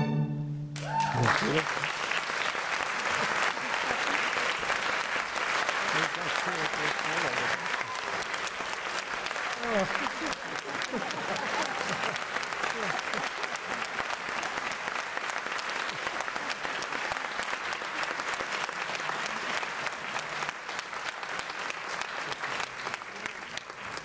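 Audience applauding with steady, dense clapping and a few shouts and a laugh. The orchestra's last held chord ends about a second in.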